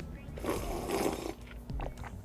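A person slurping hot soup broth from a bowl: one breathy slurp lasting under a second, followed by a couple of small clicks.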